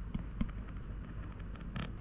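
Hands handling a threaded bolt and a Loctite bottle: a few faint small clicks and taps, the clearest near the end.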